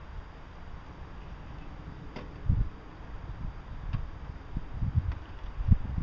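Uneven low rumbling of wind on the microphone, with a few faint clicks from hands working in a car's engine bay.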